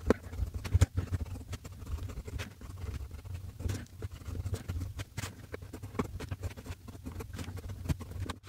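Fountain pen with a #6 Jowo medium nib writing on notebook paper: many soft, irregular scratches as the nib forms the strokes of the letters.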